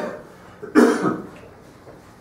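A person coughing once, sharply, about three-quarters of a second in.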